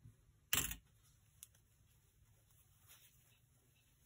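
One short, sharp clack from a pair of scissors about half a second in, as sari silk ribbon is cut from its ball, followed by a few faint ticks and rustles of the ribbon being handled.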